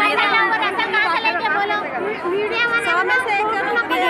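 A woman speaking close to the microphone, with other voices chattering around her.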